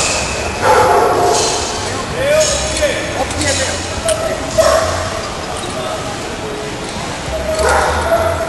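A dog barking several times in the first few seconds, with people talking around it.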